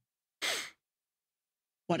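A person's short sigh, about half a second in, with dead silence around it. A spoken word begins at the very end.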